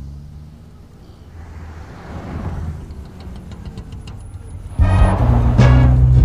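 Low, steady rumble of road traffic and a car's engine. About five seconds in, loud film background music cuts in with a heavy bass line.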